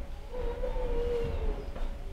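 A single held tone, slightly wavering in pitch, lasting about a second and a half over a steady low hum.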